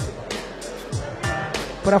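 Background music with a beat of deep drum hits and sharp percussive strikes, with a held tone in the second half. A man's voice starts right at the end.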